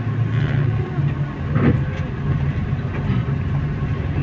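Steady engine drone and road noise heard inside the cabin of a moving vehicle.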